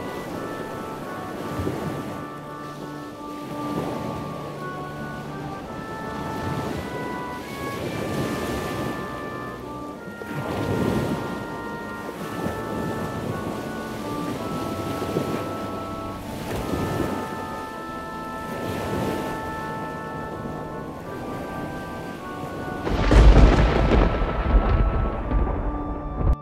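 Thunderstorm sound effect: rain with rolls of thunder swelling every couple of seconds, then a loud, deep thunderclap near the end. Soft music of held keyboard notes plays underneath.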